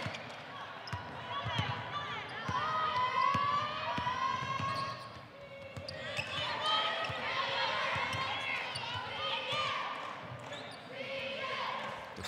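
A basketball being dribbled on a hardwood court, a run of short bounces, with voices of players and crowd in the arena over it.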